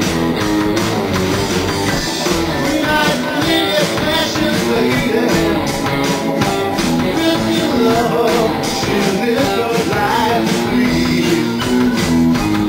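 Live rock band playing: drum kit and electric bass under held chords, with a steady beat.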